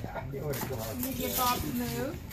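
Indistinct voices of several people talking, with no clear words.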